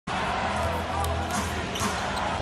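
A basketball being dribbled on a hardwood court, a few short bounces over steady arena crowd noise and background music.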